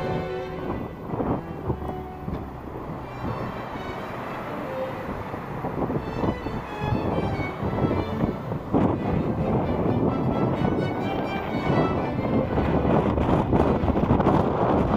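Background music over a rushing noise of wind on the microphone and breaking surf, louder in the second half.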